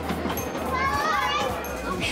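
Children's voices calling out at play, high and rising and falling around the middle, over people talking in the background.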